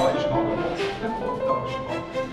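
Background classical music: an orchestral passage from a piano concerto, with strings holding sustained notes.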